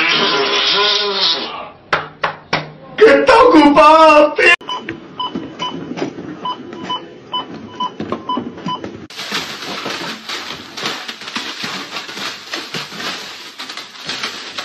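A supermarket checkout barcode scanner beeps briefly and evenly, about twice a second, for several seconds as a hand is passed over it. This comes after a man's loud wailing, crying-out voice.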